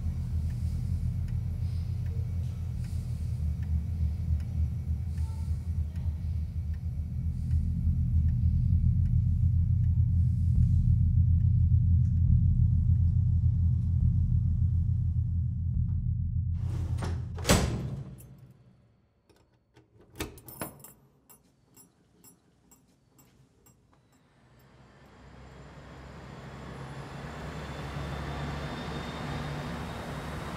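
A deep, low rumbling drone swells and then cuts off abruptly with a sharp click a little over halfway through. After a near-silent pause, a key clicks and turns in a door lock, followed by a few seconds of faint light clicking. Outdoor ambience with traffic fades in near the end.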